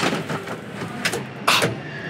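Hyundai Santa Cruz XRT's roll-up tonneau cover being pulled by its strap, rattling along its bed rails, with one sharp clack about one and a half seconds in.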